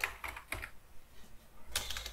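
Computer keyboard being typed on: a few slow, separate keystrokes.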